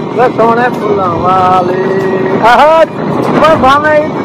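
Men singing loudly in drawn-out, high-pitched phrases, several notes held for about half a second, over the steady running noise of a moving vehicle.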